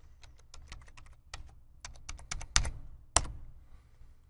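Computer keyboard typing: a run of quick, uneven key clicks as a login ID and password are entered, ending with one louder click a little after three seconds in.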